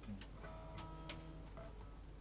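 A few light clicks, about three a second, over faint sustained notes from an acoustic guitar being softly picked.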